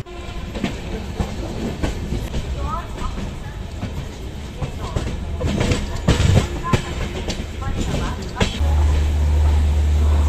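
Indian Railways passenger train rolling into a station, heard from the open coach door: wheels rumbling on the track with irregular clacks over rail joints and points. A deep steady rumble sets in near the end.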